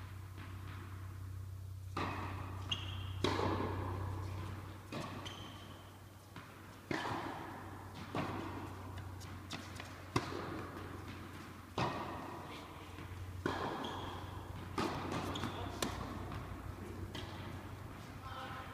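Tennis balls struck by rackets and bouncing on an indoor hard court: about ten sharp pops, one to two seconds apart, each echoing in the large hall, over a steady low hum.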